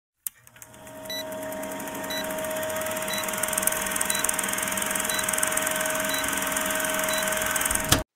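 Old-film countdown sound effect: a film projector running with hiss and crackle, a short high beep once a second. It fades in over the first second and cuts off suddenly at the end.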